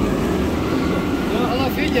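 Steady rushing water of a river rapids ride around a round raft, with voices starting near the end.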